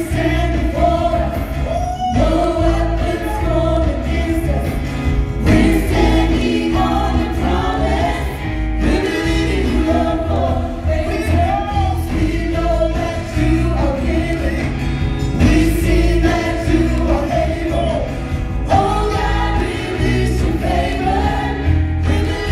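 Live gospel worship song: a man leads the singing through a microphone and a group of backing singers joins in, over instruments with a strong, steady bass.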